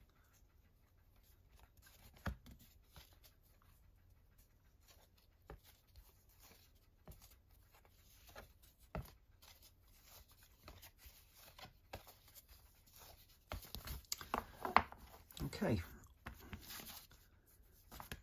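Glossy card prints being handled and flipped through: faint slides, rustles and soft taps of card against card, busier near the end.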